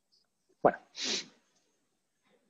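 A person's short, sharp vocal burst followed by a brief breathy rush of air, heard through a video-call connection.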